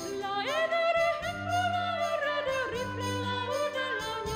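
A female soprano sings a Spanish lyric line with wide vibrato, entering about half a second in. Sustained low notes from the accompanying ensemble sound beneath her.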